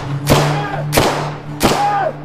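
Film-trailer score: three loud percussive hits, about two thirds of a second apart, each ringing out with a short pitched stab, over a low steady drone.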